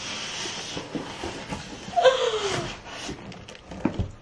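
Cardboard shipping box being opened by hand and an inner product box pulled out: a rustle and scrape of cardboard and packaging with light knocks, and a short falling vocal exclamation about two seconds in.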